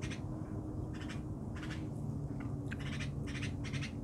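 Birds chirping: a string of short, rough chirps at irregular intervals, bunching together in the last second or so, over a steady low hum.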